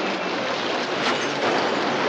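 Film sound effects of a bus driven hard into traffic: the engine running under load amid a continuous clatter and scrape of metal as it ploughs over cars, with a sharp crash about a second in.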